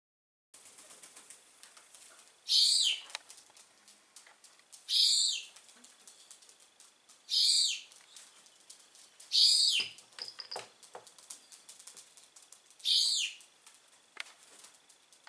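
Rock pigeons flapping their wings in five short, loud bursts, two to three seconds apart.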